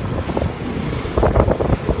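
Wind buffeting the microphone in uneven gusts, over road and traffic noise, while riding pillion on a motorcycle in city traffic.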